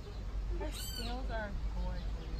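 A bird calling outdoors: a high, arched call that rises and falls, followed by a quick run of lower falling notes.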